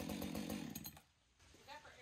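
A chainsaw running with a steady, even pulse, then cutting off suddenly about halfway through.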